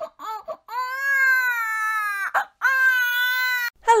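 An infant crying: a few short fretful cries, then two long wails, each lasting more than a second, with a brief gap between them.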